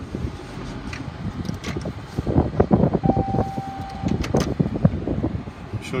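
Handling noise in a car's cabin as the camera is moved about: a run of short knocks and rustles from about two to five seconds in, with a single steady beep lasting about a second in the middle.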